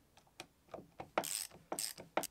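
Socket ratchet wrench clicking on a rusty lathe slide bolt. A few light clicks come first, then two short, quick runs of ratcheting in the second half.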